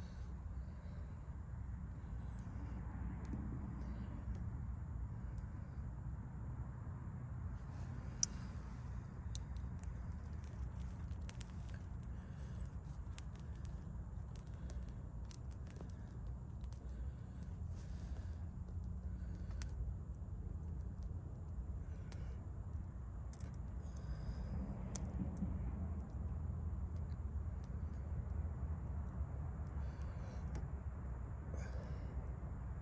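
Small twig fire burning on a cotton-pad fire starter, with faint scattered crackles and pops and one sharper pop about eight seconds in, over a steady low rumble.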